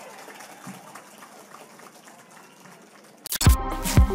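Faint crowd noise from a rally audience. About three seconds in, a news channel's logo sting cuts in with two loud sudden hits, followed by electronic music.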